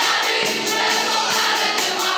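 Children's choir singing with a live school ensemble accompanying, among it keyboards, accordion, clarinets and a cajón.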